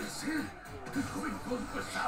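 Quiet dialogue over soft background music, heard as the soundtrack of a video playing back at low volume.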